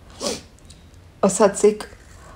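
A woman speaking Marathi in a recorded monologue: a short raspy noise about a quarter second in, then a single spoken word a little after a second.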